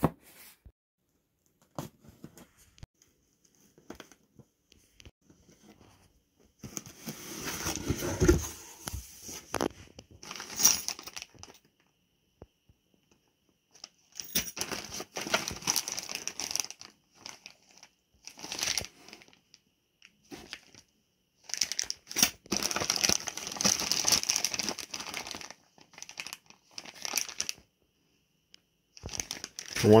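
Plastic bags of kit parts crinkling and rustling as they are handled and lifted out of a cardboard box, in irregular bursts separated by short quiet gaps.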